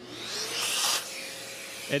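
A Shaper Origin handheld CNC router's spindle motor spinning up: a whine rising in pitch, then holding steady. A burst of hiss comes about half a second in.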